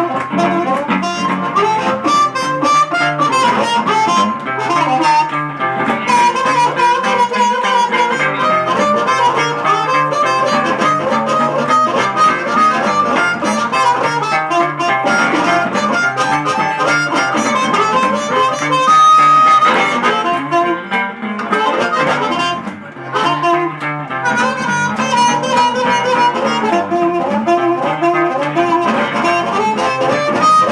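Blues harmonica solo played cupped against a vocal microphone, over guitar accompaniment in a live band. A single long held high note a little past halfway is the loudest moment.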